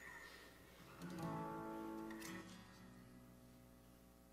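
Acoustic guitar: a single chord strummed about a second in rings for just over a second, then is cut short and fades.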